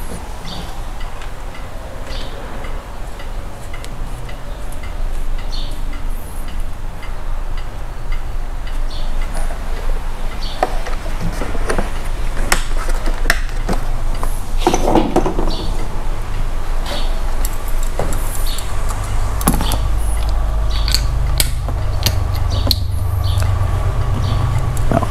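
A compression tester's hose and screw-in adapter being handled and threaded into an empty spark-plug hole: scattered light clicks and knocks of metal fittings. Under them runs a steady low rumble that grows louder about halfway through.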